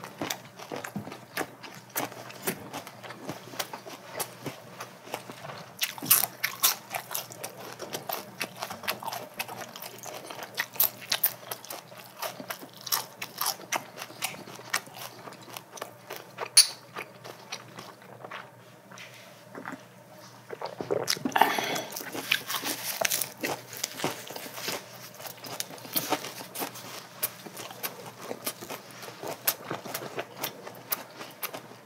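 Close-miked chewing and crunching of grilled pork belly wrapped in fresh lettuce and leaf vegetables, with wet mouth clicks throughout, louder and busier for a few seconds about two-thirds of the way in.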